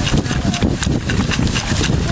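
Soil and bits of brick and limestone rubble scraping and rattling in a wooden-framed hand sifting screen as gloved hands rub them around on the mesh, a rapid, irregular run of small clicks and scrapes.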